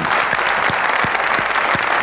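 Studio audience applauding steadily, many hands clapping at once.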